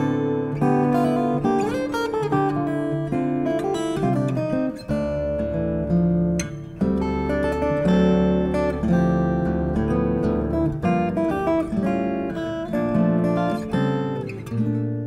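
Unaccompanied acoustic guitar, plucked melody notes and chords with no effects. A few notes slide upward near the start, and a deep bass note sounds from about five to eleven seconds in.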